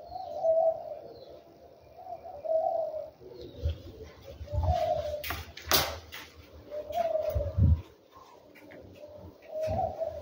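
A dove cooing in short phrases, about five calls roughly two seconds apart, with a few sharp clicks and low thumps between them.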